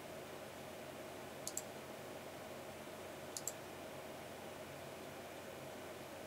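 Computer mouse button clicked twice, about two seconds apart, each click a quick double tick of press and release, over a faint steady hiss.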